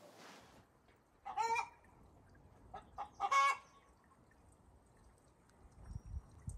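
A bird calling: two short calls about two seconds apart, with a few brief fainter sounds between them.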